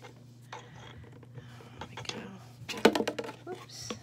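An empty plastic water bottle clattering against a tabletop in a quick cluster of sharp knocks just before three seconds in, after quieter handling: the light bottle is tipping over.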